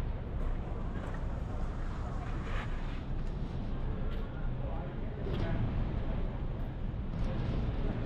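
Busy street ambience: a steady low hum of traffic with faint background voices.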